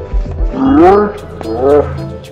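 A man's yell of effort at the discus release: two drawn-out cries, each rising and then falling in pitch, the first about half a second in and the louder, the second near the end. A few low thumps come at the start, and background music plays throughout.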